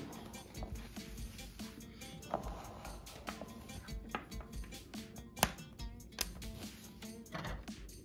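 Quiet background music, with a few light clicks and taps from small clear plastic containers being handled, the sharpest about five and a half seconds in.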